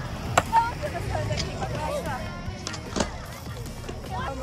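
Skateboard wheels rolling on pavement with a low rumble, and two sharp clacks of the board, about half a second in and about three seconds in, under background voices and music.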